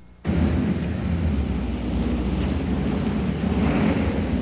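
Street traffic on a wet, slushy road: a steady rushing hiss of tyres through slush over a low engine rumble, cutting in suddenly just after the start.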